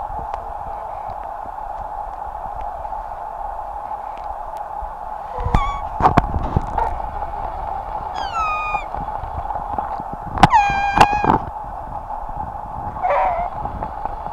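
A grass-blade whistle: a blade of grass stretched between the thumbs and blown through cupped hands, giving a few short, shrill squeals. Several of them fall in pitch, and the loudest come about two-thirds of the way through.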